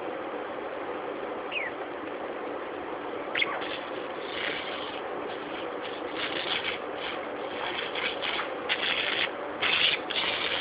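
Budgerigar giving a couple of short falling chirps, then chattering softly in quick, scratchy bursts that grow denser toward the end, over a steady background hum.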